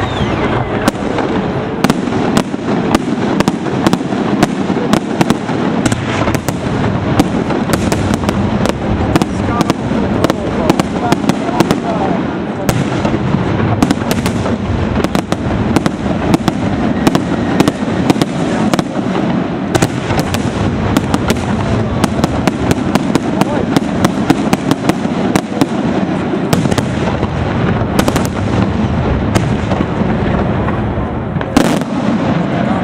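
Aerial fireworks in a professional display: a continuous barrage of bursting shells, many sharp bangs a second over a steady rumble and crackle, without a break.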